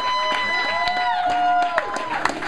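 High, wordless held vocal notes sung over acoustic guitar: a long note that slides up into its pitch and falls away, then a lower one that overlaps it and is held to near the end.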